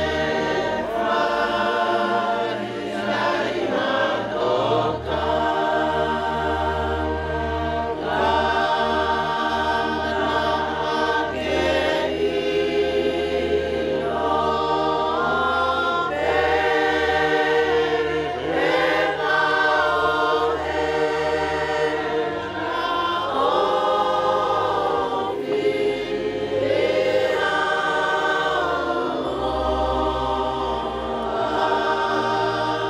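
A large group of people singing a hymn together, holding long notes in phrases a few seconds long.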